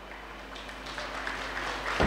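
Audience applause, faint at first and growing steadily louder.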